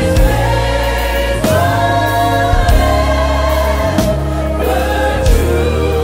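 Live gospel worship music: voices singing long held notes over a steady low accompaniment.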